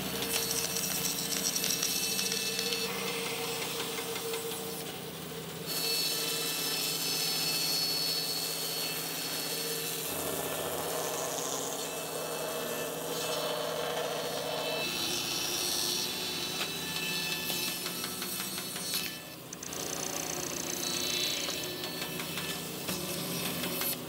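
Band saw running and cutting through the rubber sole and upper of a steel-toe sneaker: a steady whine whose tone shifts abruptly a few times.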